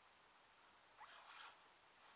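Near silence with a faint steady hiss. About a second in comes one brief rasping noise, about half a second long, that opens with a short rising squeak.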